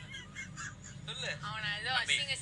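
A person's voice: a high, wavering drawn-out vocal sound in the second half, after a quieter first second.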